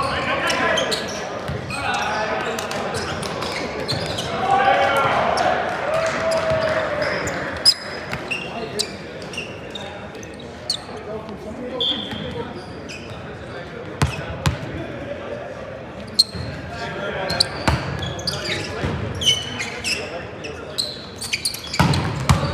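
Indoor volleyball rally: players calling out to each other, sharp slaps of the ball being hit, and short sneaker squeaks on the hardwood court, all echoing in a large gym hall.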